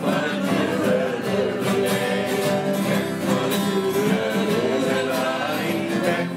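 Several acoustic guitars played together, with a man singing over them.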